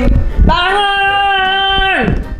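A high voice sings one long, steady note, starting about half a second in and cutting off near the end, as a drawn-out wake-up call.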